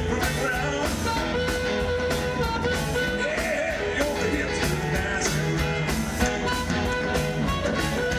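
A blues band playing live: an amplified harmonica cupped to a microphone plays bending, sustained notes over upright bass, drums and electric guitar.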